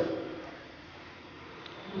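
A pause in a man's amplified speech: his voice trails off, then only a faint, steady background hiss remains.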